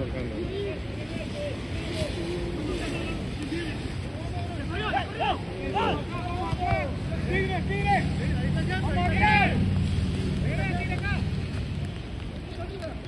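Wind buffeting the microphone at an outdoor soccer game, with players' distant shouts and calls, busiest from about four to ten seconds in. A low steady drone joins from about seven seconds and fades before the end.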